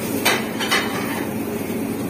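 Gloved hand mixing chilli paste in a large stainless-steel bowl, with two light knocks on the metal, about a quarter and three quarters of a second in.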